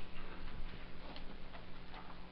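Faint, irregular ticks and taps of a pen stylus on a tablet screen while handwriting, over a low steady hum.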